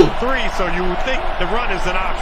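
Speech only: a man talking at a lower level than the talk around it, in the manner of the game broadcast's play-by-play commentary.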